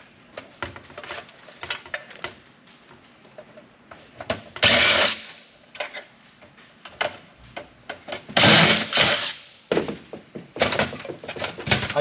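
Cordless driver running in two short bursts, about four and a half and eight and a half seconds in, backing screws out of a computer's metal power supply housing. Between and after the bursts, clicks and knocks of metal parts and screws being handled.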